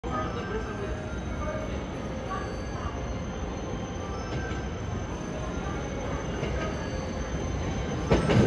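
JR E257 series electric train rolling slowly through the station: a steady low rumble of wheels on rail with faint high wheel squeals now and then.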